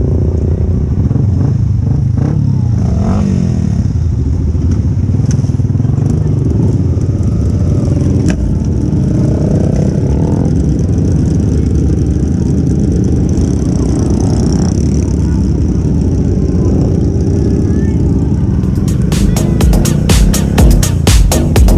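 Engines of a group of motorcycles, mostly Yamaha Exciter 150 underbones, running together at low speed, with voices mixed in. Near the end, music with a heavy, even beat cuts in.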